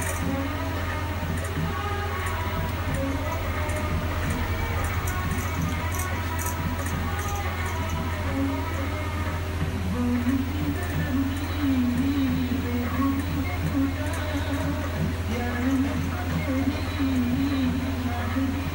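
Handheld electric vibrating massager running with a steady low hum, pressed against the scalp. Background music plays over it, and both grow louder from about halfway through.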